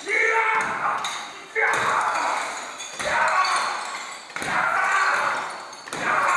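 Opening of an electronic track: a loud, bright pitched stab hits about every one and a half seconds, each ringing and fading away before the next.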